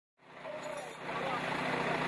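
Faint roadside traffic noise that slowly grows louder, as a vehicle approaches, with faint voices in the background.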